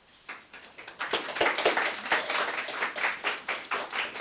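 Audience applauding: a few scattered claps at first, then dense, steady clapping from about a second in.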